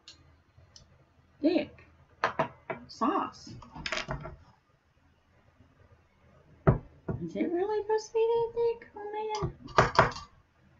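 A woman's voice making short murmurs, then a long held 'mmm' from about seven seconds in, as she tastes hot sauce. Sharp knocks and clicks of a spoon and bottle are heard in between, the loudest just before the held 'mmm'.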